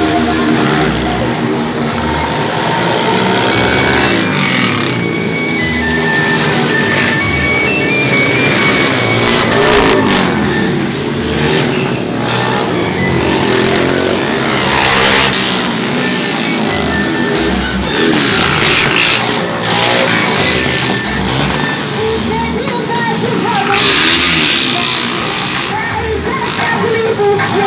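Small motorcycle engines revving hard and easing off in repeated surges as riders pass on wheelies, mixed with rock music.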